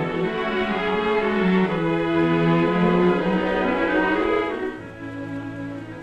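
Orchestral film-score music led by bowed strings, playing held chords that swell and then ease off about five seconds in.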